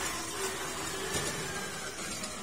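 Steady outdoor background noise: an even hiss over a low rumble, with a faint hum.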